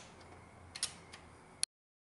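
A few faint clicks from a torque wrench as the cylinder head bolts of a Toyota 5S-FE engine are tightened to 36 ft-lb, with a sharper click near the end before the sound cuts off.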